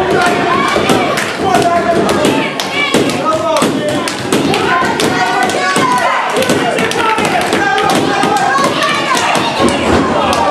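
Wrestlers' bodies slamming onto the canvas and boards of a wrestling ring, a series of sharp thuds, under continual shouting voices.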